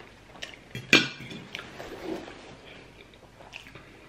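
A metal fork clinks sharply once against a ceramic plate about a second in, with a few lighter clicks of cutlery and soft chewing.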